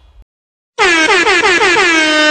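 The tail of a song fades out into a moment of silence, then a DJ-style air horn sound effect blares about a second in, stuttering through several quick downward pitch swoops before holding one steady tone.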